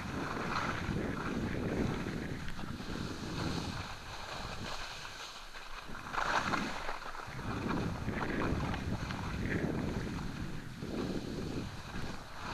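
Scraping rush of a fast descent over firm, rutted spring snow, swelling and fading every second or two with each turn, with wind rushing over the microphone.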